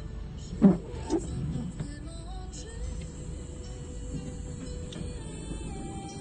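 Freight train of container wagons passing over a level crossing: a steady low rumble of wheels on the rails. Two short, loud sounds come about half a second and a second in.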